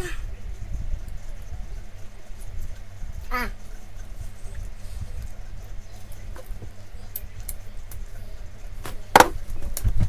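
Mouth noises of a man working through a heaped spoonful of Vegemite: faint clicks over a steady low rumble, with a short groan about three seconds in and a sudden loud burst near the end.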